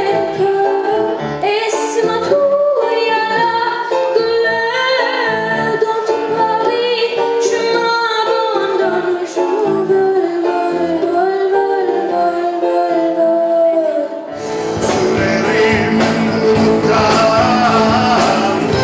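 A female voice sings a solo over a live band of drums, percussion, keyboards and guitars. About fourteen seconds in, the sound cuts abruptly to louder, denser full-band music.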